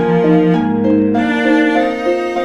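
Harp and cello playing together in chamber music at a moderate tempo: the harp in repeated broken-chord figures, with a cello line beneath it.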